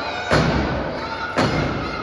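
Two heavy thuds about a second apart as bodies hit the canvas of a wrestling ring, each boom ringing out through the raised ring floor and the hall, over crowd chatter.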